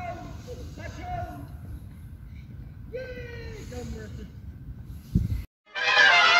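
High-pitched children's voices calling out over a low rumble of wind on the microphone. About five seconds in comes a thump, a brief silence, then a loud musical logo sting begins.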